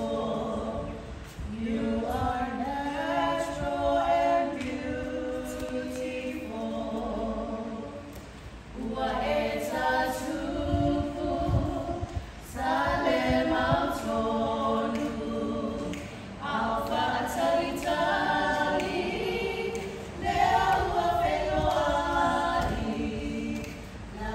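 Three women singing together a cappella, in short phrases with brief pauses between them.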